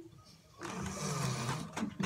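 Stifled, muffled laughter through mouths crammed with marshmallows, breathy and in irregular bursts, starting about half a second in.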